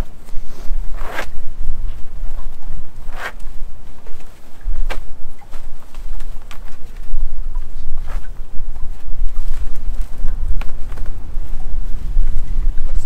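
New crab line being coiled by hand: a swish of rope dragged through gloved hands every second and a half or so. Underneath is a steady low rumble of wind on the microphone.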